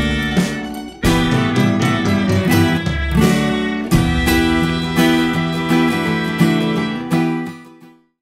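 Steel-string acoustic guitar strumming chords in a folk tune, played along with the song's recorded instrumental section. The music fades out in the last second.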